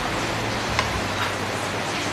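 Steady background hiss of room tone, with two faint light ticks a little under a second in and again about half a second later.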